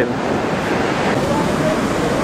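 Atlantic Ocean surf breaking on a sandy beach: a steady wash of waves, with wind on the microphone.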